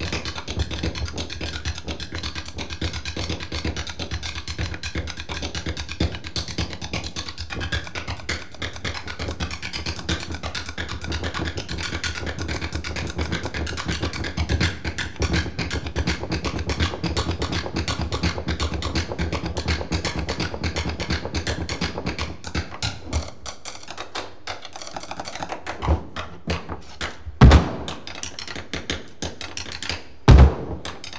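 Drumsticks played fast on a pair of Dutch wooden clogs, a dense, continuous flurry of wooden taps and clicks. About three-quarters of the way in it thins to scattered hits, with a single very loud knock near the end.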